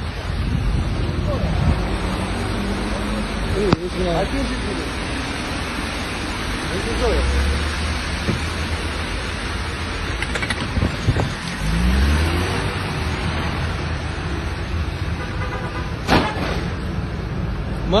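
Steady hiss of rain and tyres on a wet city street, with a car driving off across the wet road, low rumbles rising about seven seconds in and again near twelve seconds, and brief faint voices.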